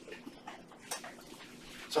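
Quiet room tone in a lecture hall during a pause, with a brief sharp noise about a second in; a man's voice starts right at the end.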